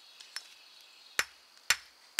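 Claw hammer striking the rock crust on an iron artillery shell to knock it off: two sharp, ringing strikes about half a second apart in the second half, after a faint tick near the start.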